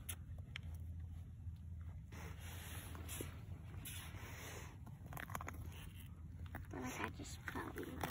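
Quiet outdoor background: a steady low rumble with a few faint rustles and clicks, and faint voices near the end.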